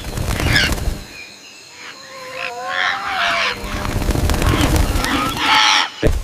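Bird calls: a wavering call about two seconds in and a harsher call near the end, after a low rumble in the first second.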